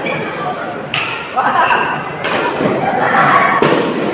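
Badminton rally in a hall: three sharp racket strikes on the shuttlecock, about one, two and a quarter, and three and a half seconds in, with spectators' voices shouting between them.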